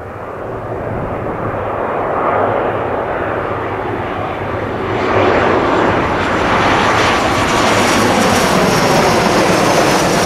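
Boeing 737 jetliner on final approach with gear down, its jet engines growing steadily louder as it comes in low overhead. About halfway through the sound steps up and a faint high whine joins it.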